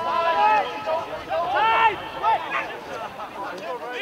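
Voices shouting and calling out indistinctly in several bursts, with no clear words.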